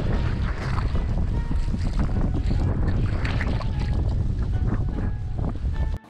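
Wind buffeting the microphone in a snowstorm out on open ice: a loud, steady low rumble.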